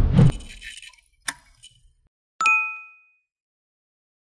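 Subscribe-button sound effects: a noisy swish dies away in the first half second, a short click comes about a second later, and then a single bright bell ding rings out for about half a second as the button flips to subscribed and the notification bell appears.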